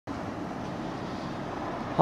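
Steady outdoor background noise: an even hiss and low rumble with no distinct events.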